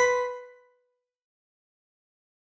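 The last note of a short chiming intro jingle rings out and fades away within about half a second, followed by silence.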